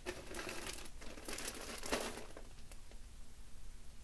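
Crinkling and rustling of packaging being handled, strongest in the first two seconds and then fading.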